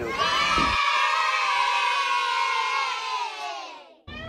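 A group of children cheering one long "yay" together, their voices falling slightly in pitch and fading out near the end.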